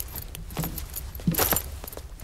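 Someone rummaging through a wardrobe: scattered small clicks and knocks, with a louder rattle about one and a half seconds in.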